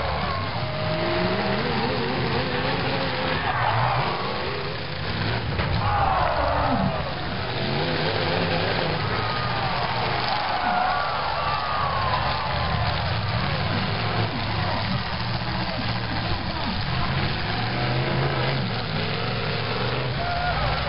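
Demolition derby car engines running and revving up and down as the cars push against each other, over the steady noise of crowd voices.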